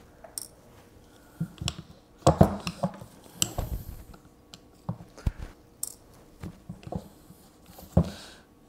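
Screwdriver working tight flathead Phillips screws out of the AZ-GTI telescope mount's encoder disc, with irregular small metallic clicks and knocks of the tool and screws, loudest in a cluster about two and a half seconds in.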